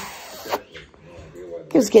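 A woman's voice saying "kiss" near the end, after a brief hiss at the start.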